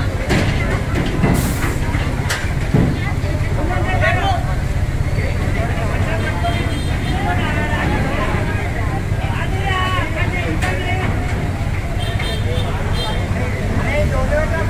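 A heavy vehicle engine running steadily under a crowd of people talking, with a few sharp knocks in the first three seconds.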